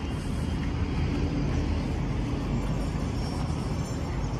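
Steady city traffic rumble from the surrounding streets, an even low hum with no distinct events.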